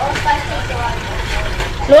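Kitchen tap running into a stainless steel sink while dishes are washed: a steady rush of water with a low rumble underneath. Faint voices in the background.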